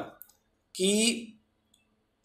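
A man's voice speaking one short word, with a brief sharp click just before it.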